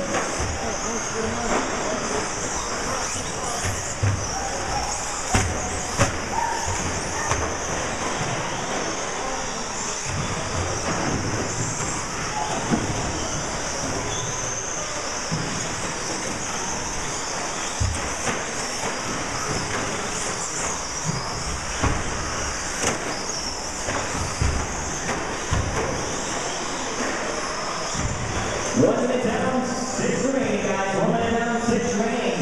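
Radio-controlled short-course race trucks running laps on an indoor track: a steady high whine with tyre noise, and sharp knocks every few seconds as trucks land off the jumps, over indistinct background voices.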